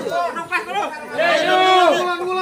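Several men's voices talking over one another.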